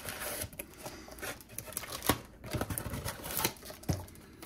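Cellophane wrapping and cardboard of a trading-card blaster box crinkling and rustling in the hands as the box is opened and packs are handled, with a few sharp taps and knocks.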